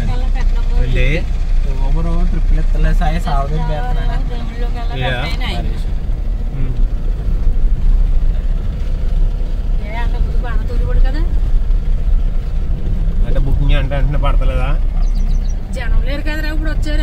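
Steady low rumble of a car driving on a dirt road, heard from inside the cabin, with people talking in short bursts over it.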